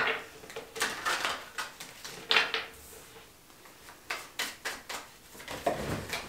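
A tarot deck being shuffled by hand: a string of irregular light card taps and slaps, with a heavier knock near the end.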